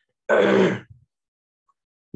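A man's voice making one short, drawn-out vocal sound, like a grunt or hesitation noise rather than a clear word, starting just after the beginning and lasting about half a second.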